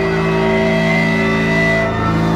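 Punk band played live through amplifiers: electric guitar and bass ring on one held, droning chord, with drums, while the bassist's hands are off his strings.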